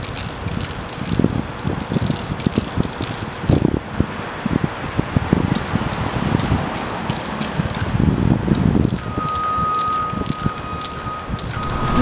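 Aerosol spray paint can rattling in irregular clicks and knocks, over steady outdoor traffic noise. A steady single tone comes in about nine seconds in.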